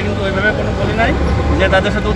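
A man's voice speaking continuously into press microphones, over steady outdoor street noise with a low rumble.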